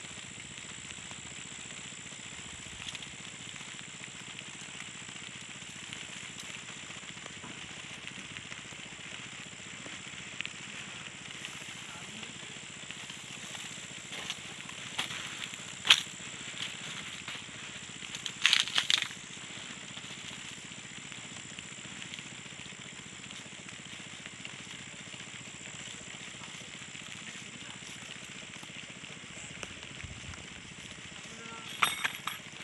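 Steady, high-pitched chorus of night insects. Fabric brushes the microphone with a sharp click about halfway through, followed by a short cluster of knocks and rustles a couple of seconds later.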